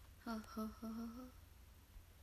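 A young woman's soft hummed laugh: three short vocal sounds on about the same pitch, the last held for about half a second.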